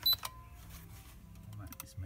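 Kewtech KT64DL multifunction tester giving a short high beep as its test button is pressed, starting a prospective earth fault current measurement.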